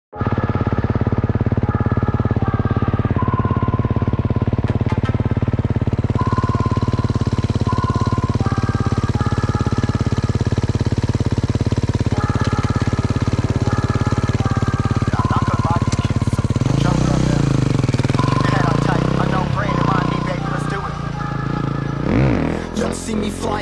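Enduro motorcycle engine running steadily under a music track with a stepped synth melody. About 17 seconds in, the engine revs up and down as the bike pulls away.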